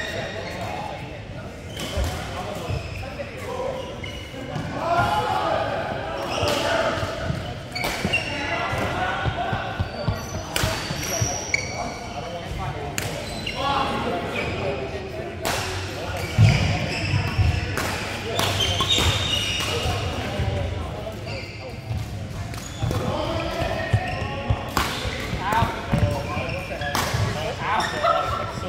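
Badminton play in a large indoor hall: shuttlecocks struck by rackets in sharp, irregular cracks, shoes squeaking on the court mats, and players' voices calling out and chatting.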